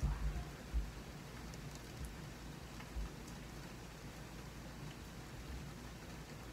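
Quiet room tone: a steady low hum with two faint knocks, about one second in and about three seconds in.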